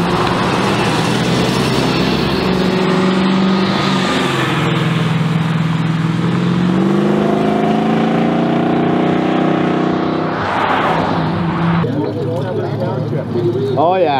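Car engines as cars drive past on a road, one accelerating with its pitch climbing for a few seconds, then a rushing pass-by about ten seconds in. The sound cuts off suddenly about two seconds before the end.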